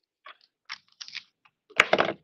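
Craft handling noise: a few light rustles and clicks of cardstock and a plastic glue bottle being moved on the work surface, then a sharper tap near the end.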